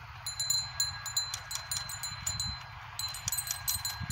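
High, bright metal chimes tinkling in quick, irregular runs, with low wind rumble on the microphone underneath.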